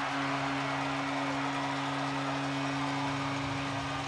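Arena goal horn sounding a steady low chord over crowd noise after a home-team goal.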